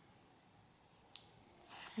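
Near silence, broken a little past the middle by one small sharp click. Near the end comes a short soft rustle as yarn is drawn through crocheted fabric with a tapestry needle.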